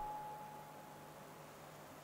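A quiet pause in a man's amplified speech: low room tone with a faint, steady high tone that fades out just past the middle.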